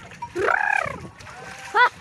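A ploughman's shouted calls of "ha" driving a yoked pair of oxen: one long drawn-out call rising and falling about half a second in, and a short sharp call near the end. Hooves splash through the flooded mud underneath.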